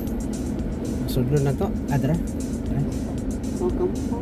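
Car driving along a road, with steady engine and road noise heard from inside the cabin. Short pitched fragments of voice or music come over it about a second in and again near the end.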